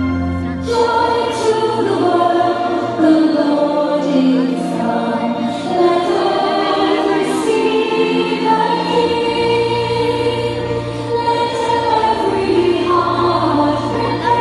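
Christian choir song with instrumental backing, a new passage starting about a second in.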